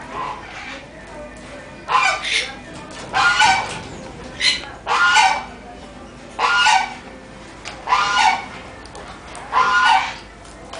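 A goose honking, very loud, a call about every second and a half from about two seconds in.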